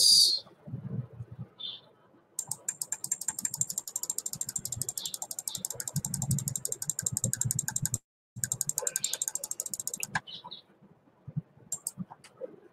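A rapid, even run of small clicks from computer controls, about ten a second, starting a couple of seconds in and breaking off briefly about two-thirds through, with a few dull low knocks underneath.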